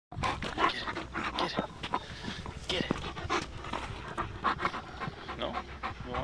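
German shepherd panting in quick, irregular breaths.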